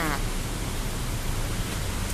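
Steady hiss of falling rain with a low rumble beneath, at an even level throughout.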